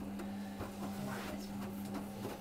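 Beko front-loading washing machine tumbling wet laundry in a wash cycle: a steady motor hum with irregular knocks as the load falls and turns in the drum.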